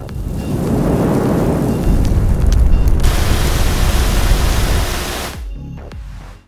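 Logo-animation sound effect: a rumble of noise that builds over about two seconds, then a sudden burst of spray-like hiss about halfway through, fading out near the end.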